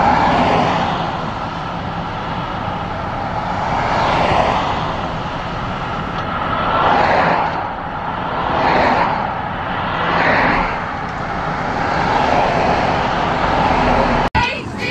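Street traffic: steady road noise with cars passing close by, swelling and fading about four times.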